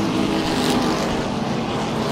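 A pack of SST modified race cars running at speed on a paved oval, their engines blending into one steady sound with a faint pitched tone through it.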